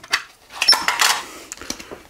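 A paper cassette insert card rustling as it is picked up and opened out, with a few light clicks. The loudest part is just under a second in, and it quietens after that.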